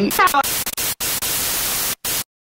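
Glitchy intro sound effect: a few quick rising electronic chirps, then loud TV-style static hiss, broken by two brief gaps, as the picture collapses to a dot like an old TV switching off.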